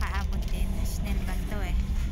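Steady low rumble inside a passenger train carriage, with short bits of women's talk over it.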